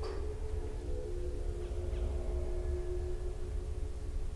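Ambient sound-design music: a soft struck, bell-like tone at the start rings on and fades out about three seconds in, over a steady low rumble.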